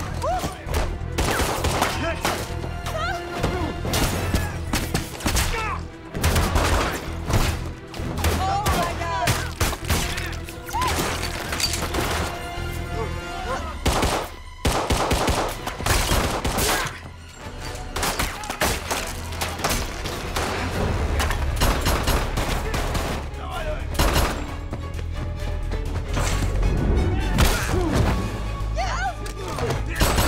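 Action-film fight soundtrack: repeated gunshots and hard blows and thuds, mixed with shouts and grunts over a dramatic music score.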